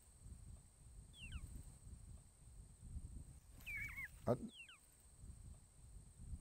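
Faint high-pitched chirps or squeaks: short falling calls in a few small groups, about a second in, just before four seconds and near five seconds, over a low rumble of wind. A short, soft, low sound a little over four seconds in is the loudest moment.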